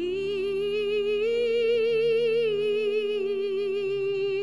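A solo singer holding one long note with vibrato, which steps up a little about a second in, over steady held accompaniment notes beneath.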